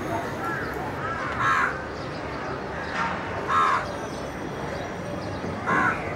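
Crows cawing: several short harsh calls a second or two apart, the loudest near the end.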